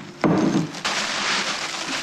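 Crackling, crinkling rustle of a flower bouquet's wrapping being handled as the flowers go into a vase, with a dull knock about a quarter second in.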